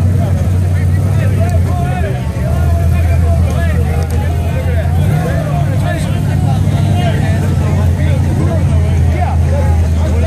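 Engines of a Chevrolet Colorado pickup and a rock buggy running hard at steady high revs as they pull against each other in a tug of war, the note rising a little about halfway. A crowd shouts and cheers over the engines.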